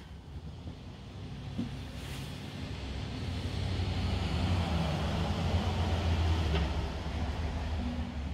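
Rumble of a passing vehicle, building to a peak about five to six seconds in and then easing off.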